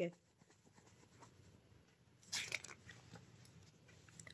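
A picture book's paper page being turned: one short rustle about two and a half seconds in, trailing off in a few faint rustles.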